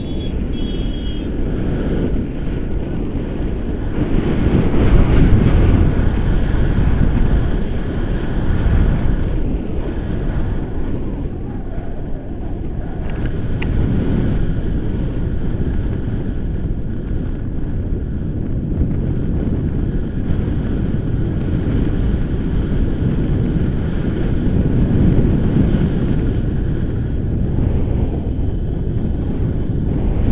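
Wind buffeting the microphone of a camera on a paraglider in flight: a loud, continuous low rumble that swells and eases.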